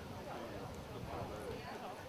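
Indistinct voices of people talking, over a low, uneven rumble.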